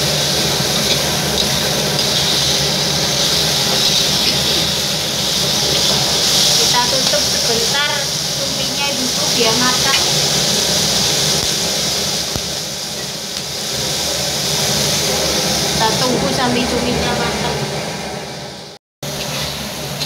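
Sliced squid, chillies and spice paste sizzling in a hot aluminium wok: a steady frying hiss as the mix is stirred with a metal spatula. The sound cuts out briefly near the end.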